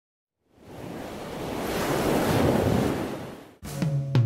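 A rush of noise, like a wave washing in, that swells for about two seconds and then fades away. An intro music track with drums and guitar starts just before the end.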